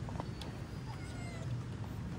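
Kittens mewing: a few faint, thin, high mews around the middle, over a steady low rumble.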